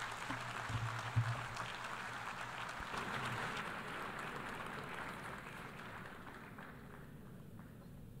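Audience applauding, the clapping thinning out and fading away over the last few seconds.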